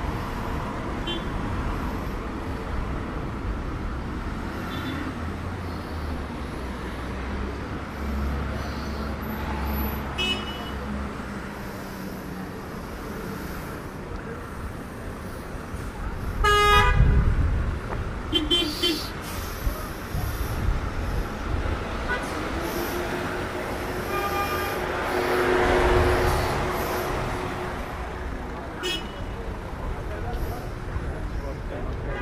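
Busy city traffic with cars passing, and a car horn blowing loudly about seventeen seconds in, the loudest sound. Shorter horn toots follow a couple of times.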